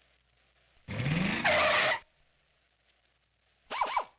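Car sound effect: an engine revs up with a rising pitch, then tyres screech for about half a second. A second short screech follows near the end, as the title logo appears.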